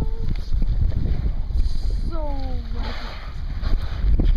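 Wind rumbling on the microphone over the low noise of the boat on the water. About two seconds in, a person gives a drawn-out falling "ooh", and a short held vocal tone sounds right at the start.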